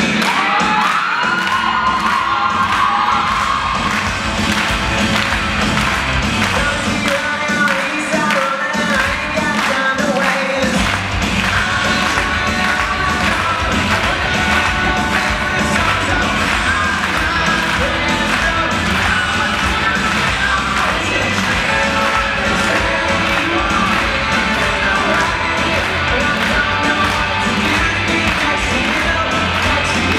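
Loud dance music with a steady beat played over loudspeakers in a large hall. The bass drops out in places during the first ten seconds, then runs steadily from about eleven seconds in.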